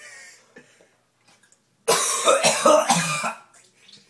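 A man coughing hard and hacking in one loud fit of about a second and a half, starting about two seconds in. His throat is irritated by the spoonful of ground cinnamon he tried to swallow.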